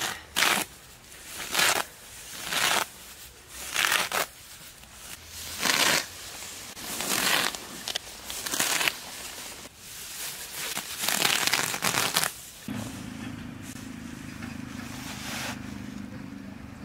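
Grass being torn up by hand, a rustling rip about eight times, roughly one every second or two. About three-quarters of the way through the ripping stops and a steady low hum takes over.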